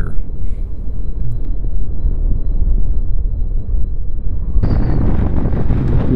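Wind rushing over the microphone on a moving Suzuki V-Strom 650 motorcycle, with a steady low rumble from the ride. About four and a half seconds in, the wind noise turns suddenly louder and hissier.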